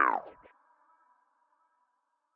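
The end of a producer's vocal tag, the voice sliding down in pitch and cutting off about half a second in, followed by a faint, thin, steady tone that fades out.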